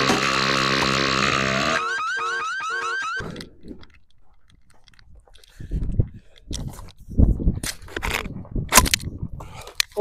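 A loud, drawn-out cartoon sound effect that breaks off about two seconds in, followed by an electronic warbling tone that rises and repeats about four times a second for a second and a half. Later come several sharp knocks and gusts of wind on the microphone.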